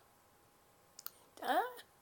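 Two short, sharp clicks about a second in, followed by a woman's voice saying 'Ah'.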